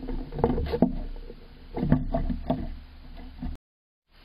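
A gray squirrel's claws scrabbling and knocking on the wooden nest box as it climbs in, in two loud bursts about two seconds apart. The sound cuts off suddenly near the end.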